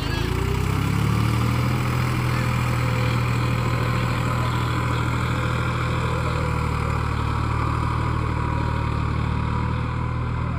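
New Holland tractor's diesel engine working as the tractor drives through deep wet mud. The revs climb in the first second, then hold steady.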